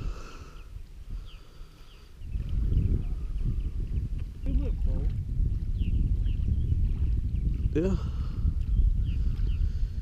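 Wind buffeting the microphone as a low, uneven rumble that starts about two seconds in, with faint short bird chirps through it and a couple of brief words.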